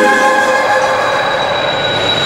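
Background score of a TV drama: a sustained string chord carrying on from the preceding music and slowly fading, with a thin steady high tone over it.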